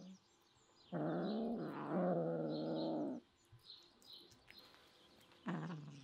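Domestic cat giving a low, drawn-out call of about two seconds, starting about a second in, then a shorter one near the end. Birds chirp faintly in the background.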